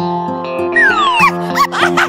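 Background music for a children's video: steady held notes with a long falling slide about a second in and a few short squeaky chirps toward the end.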